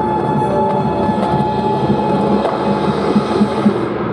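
Drum corps brass and percussion playing a loud, sustained full-ensemble passage. The highest notes drop away just before the end.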